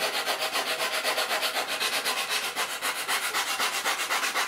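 80-grit sandpaper on a flat sanding stick rubbing back and forth over balsa wood in quick, even strokes, shaping a wingtip fillet.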